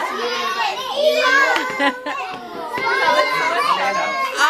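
Many children talking and shouting over one another, with no single voice standing out.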